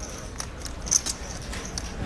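Clay poker chips and playing cards clicking on the table as a call goes into the pot and the flop is dealt: a handful of short sharp clicks over a low steady room hum.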